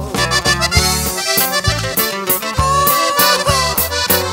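Instrumental break in a norteño-style ranchera song: an accordion plays the melody over a bass line and a steady beat, with no singing.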